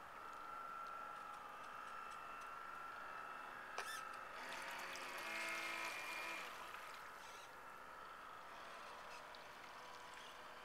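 Radio-controlled model lobster boat's motor whining steadily, growing louder and fuller as the boat passes close by about five to six seconds in, then fading as it moves away. A sharp click just before four seconds in.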